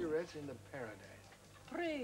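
Dubbed dialogue: a voice trails off, a short pause follows, and a woman starts speaking near the end, over a faint steady low hum.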